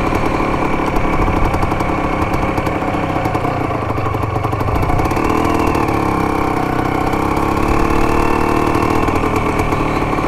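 1975 Can-Am 250 TNT's two-stroke single-cylinder engine running steadily at low revs, with a slight rise in pitch about halfway through. The bike has been stalling after a carburettor rebuild, and the owner suspects the idle is set a little low.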